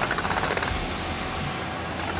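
Rows of small plastic bin lids in a Matrix Maxi tool vending machine drawer clicking in a fast rattling run as a hand sweeps across them, for a little under a second at the start. After that it is quieter, with a low hum.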